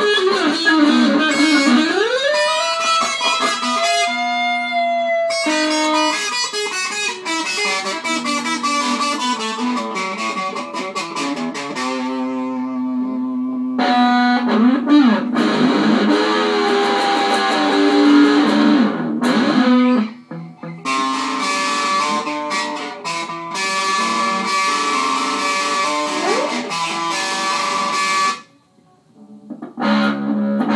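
Electric guitars played through small amplifiers, loose riffs with notes bent and slid up and down. The playing breaks off briefly about two-thirds of the way through and again just before the end.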